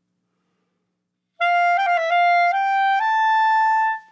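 A clarinet playing a turn ornament around a G: after about a second and a half of silence it starts on a held note and quickly goes up, down and back round it. The line then steps up twice to a higher held note that stops right at the end.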